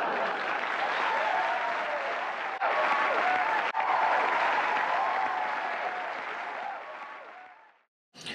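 Studio audience applauding, the applause fading out near the end.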